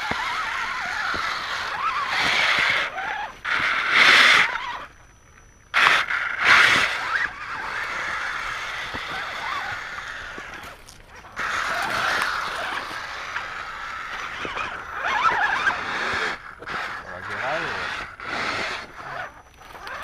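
Electric motors and geared drivetrains of radio-controlled rock crawlers, an Axial Wraith and a Twin Hammer, whining as they climb over rocks. The whine swells and drops with the throttle in uneven surges and stops briefly about five seconds in.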